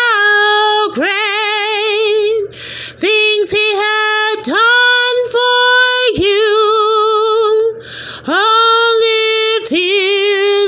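A woman singing solo and unaccompanied, holding long notes with vibrato. She breathes audibly twice, about two and a half seconds in and again about eight seconds in.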